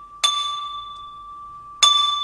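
A small metal bell struck twice, about a second and a half apart, each strike ringing on at one steady pitch and slowly fading, as part of chầu văn ritual music accompaniment.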